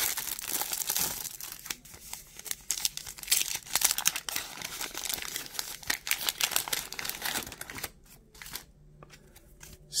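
Cellophane and paper wrapping of a trading-card rack pack crinkling and tearing as it is opened by hand and the cards are pulled out. The crinkling is dense at first and thins to a few quieter rustles about eight seconds in.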